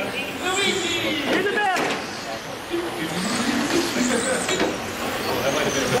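Several radio-controlled touring cars racing, their motors whining and rising and falling in pitch as the cars pass and accelerate out of corners.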